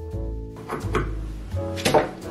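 Background music with a few sharp snips of scissors cutting through fabric on a table, the loudest snip near the end.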